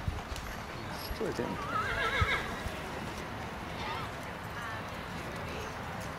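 A horse whinnying: one quavering call about a second and a half in, then a shorter wavering call later, with a few sharp knocks before it.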